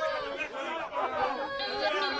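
Several people's voices chattering and calling out at once, with the music faint beneath them.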